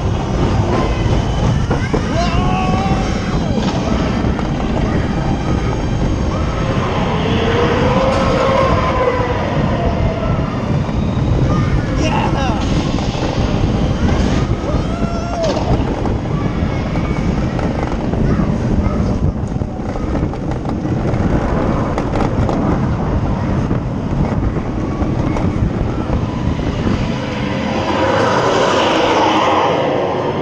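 Ride on the Dark Coaster indoor roller coaster heard from a rider's seat: a loud, steady rumble of the train running on the track, with riders' voices calling out at several points.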